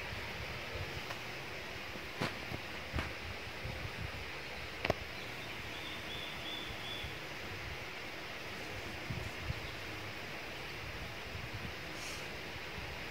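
Quiet forest ambience: a steady hiss with scattered faint clicks, soft low thuds and rustling from wild boar rooting in the leaf litter, and a brief faint high note about six seconds in.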